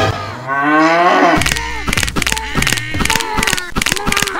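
A cow mooing: one long call that rises in pitch through the first second or so. It is followed by a quick string of short rising-and-falling tones with clicks, about three a second.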